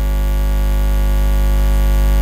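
Loud, steady electrical mains hum in the audio feed: a low buzz with a ladder of evenly spaced overtones, slowly getting a little louder.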